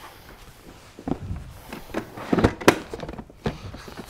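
Ducle Daily child car seat being turned round and set down on a car seat: its plastic shell gives a handful of short knocks and thuds, the sharpest about two and a half seconds in.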